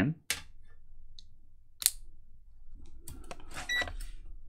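A MagSafe charger connector clicks into a MacBook Air: a sharp click just after the start, then a second sharp click. Near the end come a few light handling clicks and a short high electronic beep.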